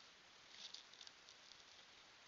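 Near silence: a faint steady hiss with a short cluster of soft, light ticks and rustles about half a second to a second in.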